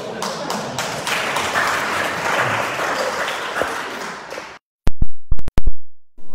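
A small audience clapping in a hall for about four and a half seconds. The sound then cuts out abruptly and is followed by about five very loud, sharp clicks near the end.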